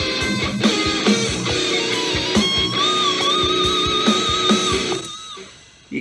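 Electric guitar solo played back from the recording: a run of notes ending in a long held note with wide vibrato that fades out near the end. The take has a punched-in edit, and the join is not audible.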